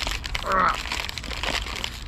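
Plastic crisp packet crinkling and crackling as it is pulled hard at the top in a struggle to tear it open. A short strained vocal noise comes about half a second in.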